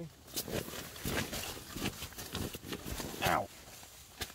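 A German shepherd clambering across sleeping bags and out of a small nylon backpacking tent: irregular rustling, scraping and soft knocks of fabric and paws. Near the end a person gives a short "ow" as the dog steps on them.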